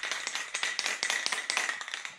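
A rapid, uneven run of light clicks and taps that fades out just after the end.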